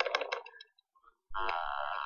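A steady, buzzing electronic tone starts abruptly about a second in. It is the soundtrack of a generative audiovisual artwork being played back, with sound shaped by waveform generators and filters.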